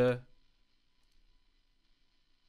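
Faint clicks of a computer mouse after a last spoken word.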